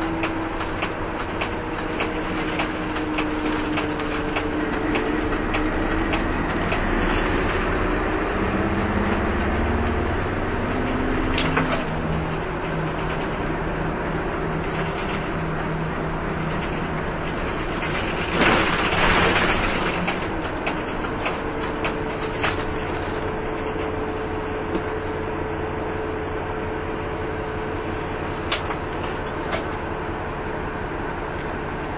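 City bus heard from inside the cabin while driving: the engine's drone slowly falls and rises in pitch as it speeds up and slows, over steady road noise, with a few clicks and rattles. About two-thirds of the way through there is a hiss lasting about two seconds.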